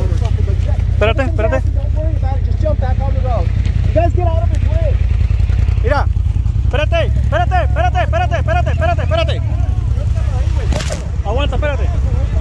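Off-road race truck engine running steady and low in low range, under loud shouting voices, while the truck is being pulled free with a tow strap. A short burst of noise comes about eleven seconds in.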